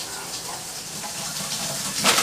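Water running in a bathroom, a steady even hiss.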